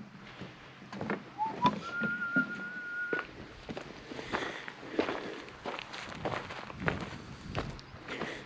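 Footsteps at a steady walking pace on a dirt and rock trail strewn with dry leaves. About a second and a half in, a short rising whistle leads into one steady, high whistled note held for over a second.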